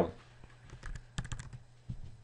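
Computer keyboard keys being typed: a quick run of several keystrokes about a second in, then one more near the end, entering account numbers into a form.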